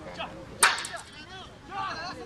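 A single sharp crack, like a smack or hit, about half a second in and louder than anything else, with sideline spectators chattering around it.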